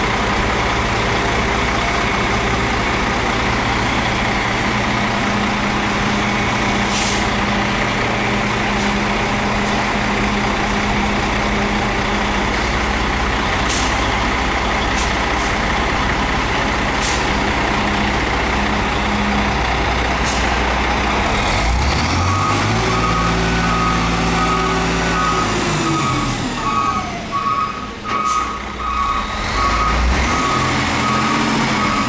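Freightliner M2 roll-off truck's Mercedes-Benz diesel engine running steadily, then revving up and dropping back about three-quarters of the way through. A reversing alarm beeps repeatedly over it near the end, and there are a few short hisses of air.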